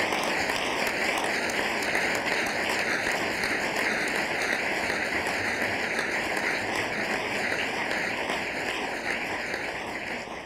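Steady applause from a seated audience, starting to die away near the end.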